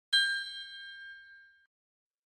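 A single bright bell-like ding of an intro logo chime, struck once at the start and ringing out, fading away by about a second and a half in.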